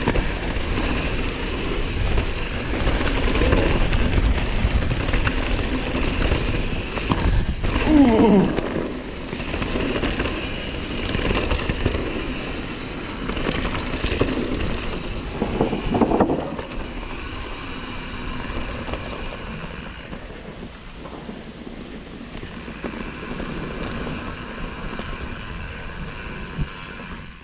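Mountain-bike riding on a dirt trail: wind buffeting the camera microphone over rumbling, rattling tyre and trail noise. Two short sounds fall in pitch about 8 and 16 seconds in, and the noise eases off over the second half.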